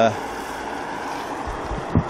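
Steady rushing noise of a car driving away over a wet road, with a soft knock near the end.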